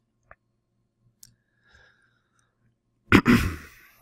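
A man clears his throat once, about three seconds in, a sharp start trailing off within a second. Before it, only a few faint clicks.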